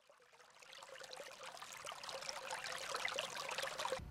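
A faint hiss with fine crackle and a thin steady tone under it, fading in from silence and growing louder.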